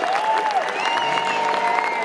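Large concert audience applauding, with dense clapping, cheers and whistles gliding up and down over it.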